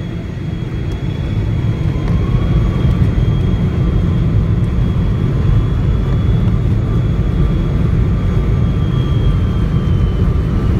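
Boeing 777-200's Rolls-Royce Trent 800 engines at takeoff thrust, heard from inside the cabin beside the wing, as the jet accelerates down the runway. A deep rumble runs under a high, steady fan whine. The sound swells over the first two seconds, then holds loud.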